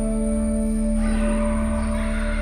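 Calm instrumental background music of long held notes. A harsh, rasping sound joins it about a second in.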